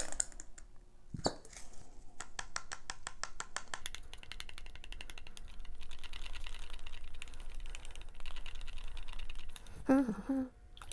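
Wooden craft stick stirring acrylic paint and pouring medium in a small cup, a fast, even run of small clicks and scrapes as the stick strikes the cup's sides.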